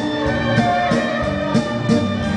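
A dance band playing a waltz, with a saxophone melody over keyboard accompaniment and a steady drum beat.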